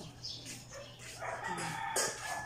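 A rooster crowing: one long, drawn-out call that starts a little over a second in.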